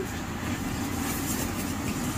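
Steady low background hum with a hiss over it, unchanging throughout, with no distinct knocks or clicks.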